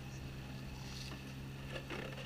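A boat's motor running at a steady hum while the wooden hull cuts through choppy water, with the rush and splash of the water along the side.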